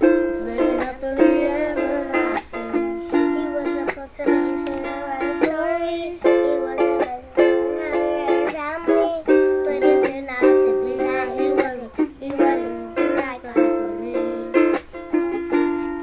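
Ukulele strummed in a steady rhythm of chords, each strum starting sharply and ringing on.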